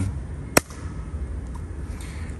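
A single sharp hand clap about half a second in, made as a sync mark to line up the audio of two cameras, over a steady low rumble.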